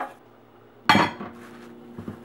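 Metal cookware being handled on a stovetop: a light clink, then a loud clang of a pot or lid being set down about a second in, which keeps ringing for a couple of seconds.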